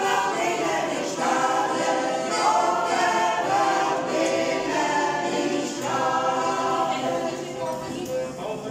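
A choir of several voices singing a song together in sustained phrases.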